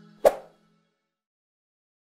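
A single short pop sound effect, of the kind laid on an animated subscribe-button click, over the last faint notes of fading outro music.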